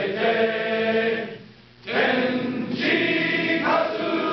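Men's choir singing in harmony, holding long chords. The phrase ends a little over a second in, a brief breath pause follows, and the choir comes back in at about two seconds.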